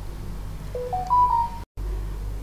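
A short electronic chime of three beeps rising in pitch, the last held longest, about a second in. The audio cuts out for an instant just after it.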